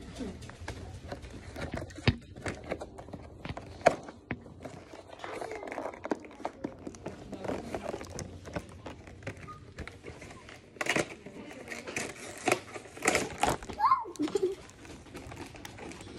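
Clear plastic toy packaging crinkling and crackling as it is handled and pulled open, with sharper crackles in the last few seconds.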